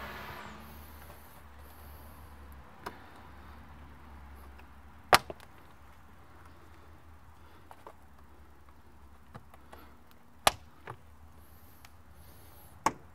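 Plastic push-pin retainers on a Jeep Wrangler grille snapping into place as they are pressed in: two loud sharp clicks about five seconds apart, with a few fainter ticks between and after.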